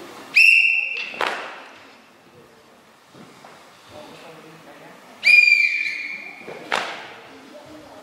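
Referee's whistle blown twice, a few seconds apart, each a steady high blast that ends with a short sharp accent. The second blast dips in pitch partway through. The blasts sound like the signals for judges' decision flags in a karate kata bout.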